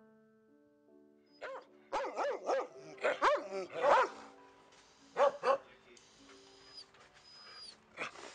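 Dogs barking in quick runs of short barks, starting about a second and a half in and coming again a little after the fifth second, over soft piano music.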